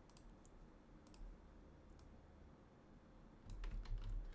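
Faint computer mouse clicks, a few scattered singly, then a cluster of clicks with a soft low thump near the end.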